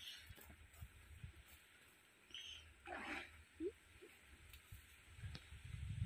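Near silence: faint wind rumble on the microphone, swelling near the end, with a brief soft rustle about three seconds in.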